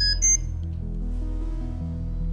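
Two short, high electronic beeps in quick succession, the second higher, from the RemunityPRO infusion pump system as priming is started. Soft background music runs beneath.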